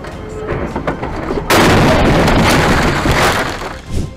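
A vehicle collision, a truck striking the car that carries the dashcam: a sudden loud crash about one and a half seconds in, lasting about two seconds before it dies away.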